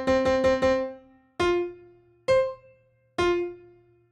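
Native Instruments The Grandeur sampled concert grand piano: one note struck rapidly about six times in the first second, then three single notes at different pitches about a second apart, each left to ring out and decay.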